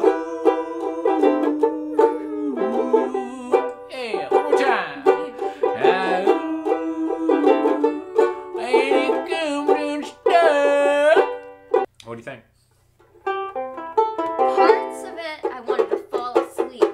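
Two Vangoa banjo ukuleles strummed in a steady rhythm while a man and a woman sing over them, the voice closing a phrase on a long held note with vibrato. The playing stops for about a second shortly after, then the strumming picks up again.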